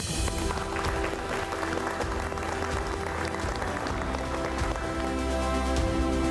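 Many people clapping over steady background music.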